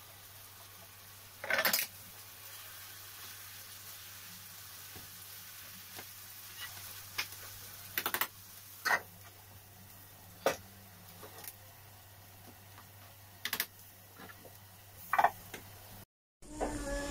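Chicken and onion frying in a pan with a faint steady sizzle. A metal utensil scrapes and taps against the pan a handful of times, the longest and loudest scrape about a second and a half in.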